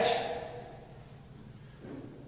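The last word of a man's question trails off in the echo of a large hall, fading within about half a second into quiet room tone.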